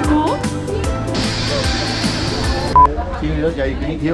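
Background music with a steady beat, then a hissing stretch and a short, loud beep about three seconds in, with a voice after it.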